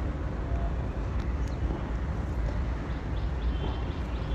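Steady low outdoor background rumble, with a few faint short high chirps.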